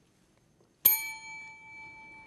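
A chrome desk service bell struck once about a second in, ringing on with a clear tone that slowly fades: a player buzzing in to answer.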